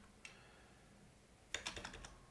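Faint computer-keyboard keystrokes: one light tap, then a quick run of several keys about one and a half seconds in.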